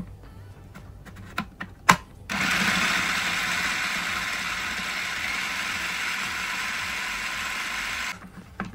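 Electric food processor chopping onion and red capsicum: a few light clicks, then the motor starts about two seconds in and runs steadily, slowly getting a little quieter as it goes.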